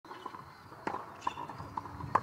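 Tennis ball bounced a few times on a hard court before a serve: short, evenly spaced knocks.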